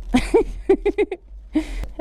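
A woman laughing in a run of short bursts, followed by a brief rustle of fabric and a single sharp click near the end.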